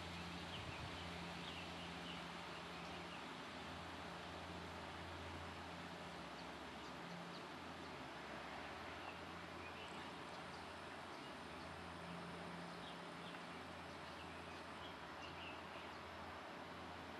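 Faint outdoor ambience: a steady hiss with a low hum underneath, and scattered faint, brief high chirps.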